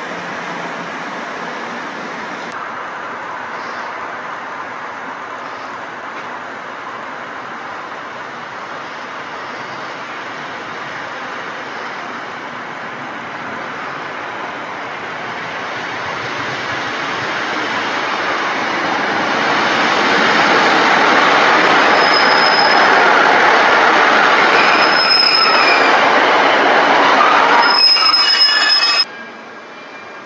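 Passenger trains running along the platform: a steady rumble of wheels on rail that grows much louder about two thirds of the way through. Three short high-pitched squeals come near the end, then the sound cuts off abruptly.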